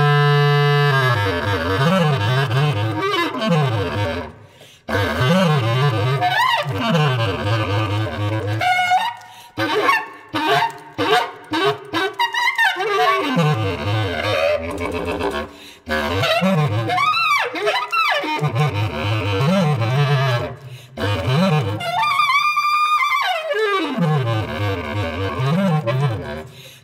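Solo bass clarinet in free improvisation: low held notes, swooping glides up and down in pitch, and shrill high passages, broken by several short pauses.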